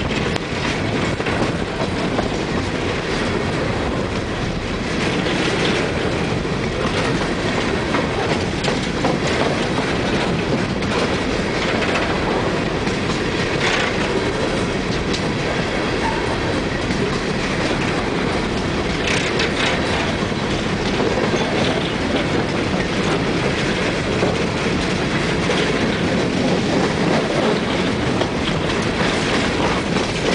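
Empty coal train's tub-bottomed gondola cars rolling past close by: a steady rumble of steel wheels on rail, with clusters of sharp clacks every several seconds as the wheel sets pass.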